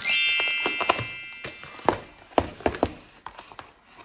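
A bright, ringing chime right at the start, fading over about a second and a half. It is followed by a cardboard shipping box being pulled open by hand: a run of short, sharp tearing and clicking sounds.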